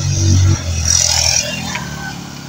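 Small motorcycle engine running close by, loudest in the first half-second and then fading as it moves off.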